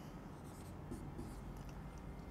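Marker pen writing numbers on a whiteboard: a few faint, short strokes.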